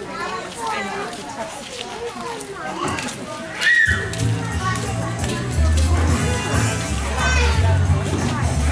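Children chattering and calling out, then about four seconds in, loud music with a heavy bass beat starts and carries on.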